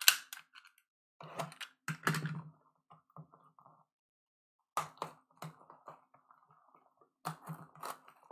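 Plastic shrink wrap being cut and peeled off a cardboard box of trading cards: crinkling and crackling in four short spells, with a sharp click at the start.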